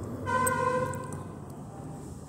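A vehicle horn sounding one steady note for about a second, starting just after the start and fading out. Underneath is the low, steady sound of onions frying in a kadai.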